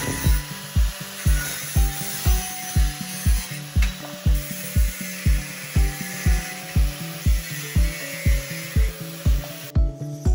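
Background music with a steady beat of about two thumps a second, the loudest sound, over an angle grinder cutting through a metal bar with a high grinding noise. The grinding stops just before the end.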